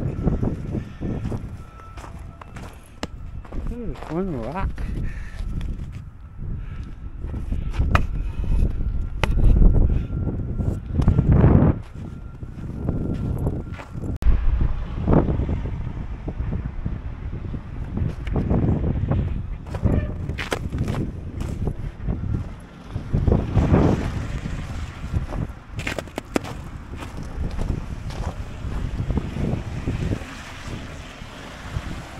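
Wind buffeting the camera microphone in a low, uneven rumble, with irregular footsteps in snow.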